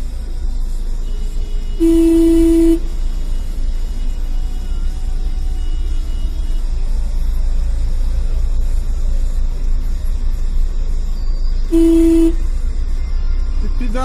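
Car horn honking twice: a steady single-pitched blast of just under a second about two seconds in, and a shorter one near the end. Underneath is the steady low rumble of traffic heard from inside a car.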